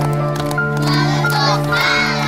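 A crowd of children's voices calling out together, with some hand claps, over steady background music.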